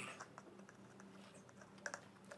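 Near silence: room tone with a few faint small clicks, as of a plastic cup with a straw being handled, the last and clearest one near the end.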